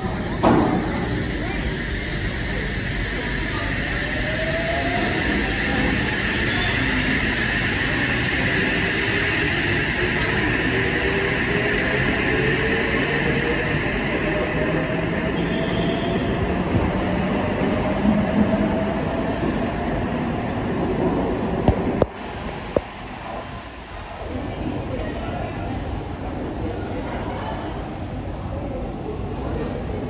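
OSCAR (H set) electric multiple unit moving along an underground platform: steady running and rail noise with a high whine, and a motor tone slowly rising in pitch as the train gathers speed. About 22 s in the sound drops away suddenly after a few sharp clicks, leaving quieter station noise.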